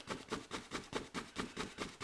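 A two-inch paint brush working oil paint against a stretched canvas in quick, soft repeated strokes, about four a second.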